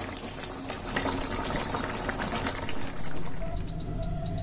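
Prawn curry gravy simmering and sizzling in a non-stick frying pan, a dense fine crackle of bubbling sauce. Background music with steady tones comes in about three seconds in.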